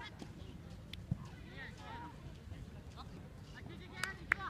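Distant shouted calls from youth football players on the pitch, a few short high-pitched shouts in the middle, with one sharp knock about a second in over a steady low outdoor rumble.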